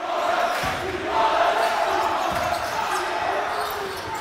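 A basketball bouncing on a hardwood gym floor during live play, a few low thumps over the steady murmur of a gym crowd.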